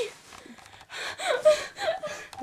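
A person's voice making brief, unclear vocal sounds about a second in, after a short lull.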